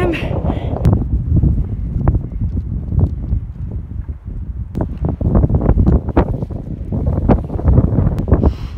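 Gusty wind buffeting the microphone in a heavy low rumble, with scattered sharp clicks and knocks throughout, thickest in the second half.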